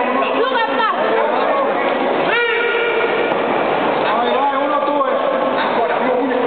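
Loud arena crowd watching a fight: a dense din of many voices shouting at once, with single loud shouts standing out about half a second in and again about two and a half seconds in.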